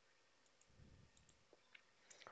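Near silence, with a couple of faint computer mouse clicks about one and a half seconds in.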